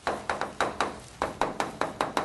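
Chalk tapping and scraping on a blackboard as words are written: a quick run of short, sharp knocks, about six a second, with a brief pause just past the middle.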